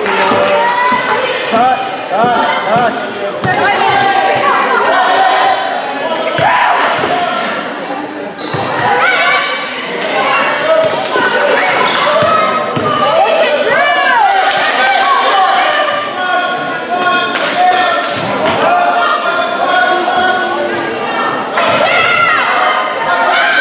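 Basketball being dribbled on a hardwood court during live play, with players' and spectators' voices calling out, all echoing in a gym.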